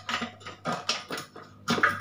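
A few light clicks and knocks of a plastic motorcycle fuel pump module being handled and fitted into the fuel tank opening, over a low steady hum.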